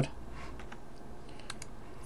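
A few faint clicks at a computer, over a low steady room hiss.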